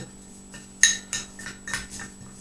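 Metal teaspoon clinking against a small glass bowl while stirring a dry mix of salt, sugar and crushed spices: four sharp clinks, the loudest a little under a second in.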